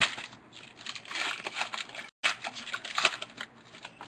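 Foil wrapper of a Panini Elite football card pack being torn open and crinkled by hand: a run of crackling and tearing with many small sharp crinkles. It breaks off for an instant about halfway through.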